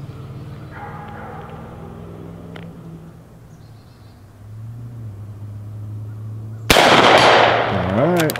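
A single rifle shot from a Marlin 1894 Cowboy lever-action in .45 Colt, near the end, with a long echoing tail. Before it there is only a quiet, low, steady outdoor background.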